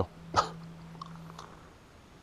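A man's single short vocal sound, hiccup-like, about half a second in, followed by a faint click about a second in.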